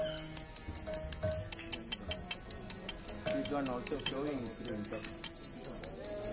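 Small metal bell ringing rapidly and without pause, many strikes a second, each ring carrying over into the next. Voices sound underneath.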